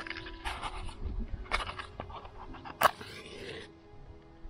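A wooden match struck on a matchbox: scraping strikes, then a sharp strike near the end that catches and flares with a brief hiss.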